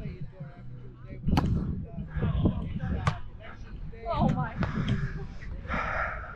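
Volleyball being served and played: two sharp smacks of hands striking the ball, the first about a second and a half in, over a steady low rumble of wind muffled by the microphone's wind cover, with a brief unclear voice near the middle.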